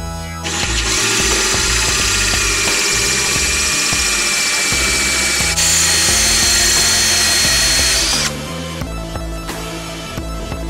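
Cordless drill spinning a 1-1/4-inch diamond core bit down into a wet granite countertop: a loud, steady grinding whine that starts about half a second in, jumps higher in pitch a little past halfway, and stops over a second before the end.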